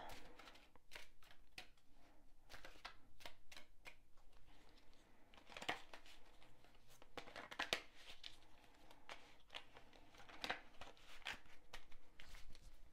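A tarot deck being shuffled by hand: soft, irregular card slaps and clicks as packets of cards are slid and dropped from one hand onto the other, a few taps louder than the rest.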